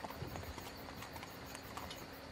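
Faint clip-clop of a horse's hooves, a soft, irregular run of small knocks over a low, steady background.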